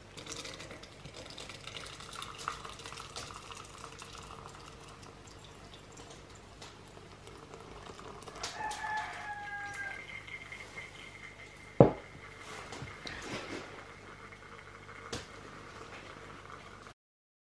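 Hot maple syrup trickling from a pot through a cheesecloth-lined strainer into a glass mason jar. A rooster crows once, about halfway through, and a single sharp knock follows a couple of seconds later, the loudest sound.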